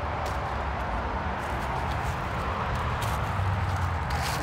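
Steady rustling and scuffing of brush and dry leaves as someone scrambles up a steep, overgrown embankment, with a low rumble and a few faint knocks from the phone being jostled.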